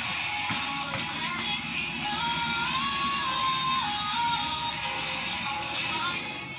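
Music playing, with a clear melody line that steps up and down in pitch, and a few sharp clicks about a second in.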